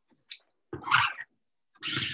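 Two scraping strokes of a small squeegee dragging ink across the silk mesh of a hoop-stretched printing screen, each lasting about half a second.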